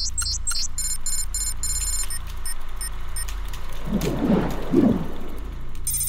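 Title-card sound design over a steady low hum: typewriter keystrokes clack out the last letters of the title in the first moment. A few electronic bleeps follow, then a brief warbling sound about four seconds in.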